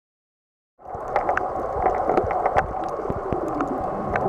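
Underwater ambience: a dense bubbling, gurgling wash with scattered sharp clicks and a few faint falling tones. It starts suddenly just under a second in.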